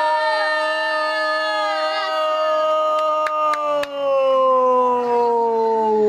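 A man's long, unbroken goal cry in Portuguese football commentary, a single held "gooool" that slowly sinks in pitch as his breath runs out, celebrating a goal just scored. A few faint clicks sound in the middle.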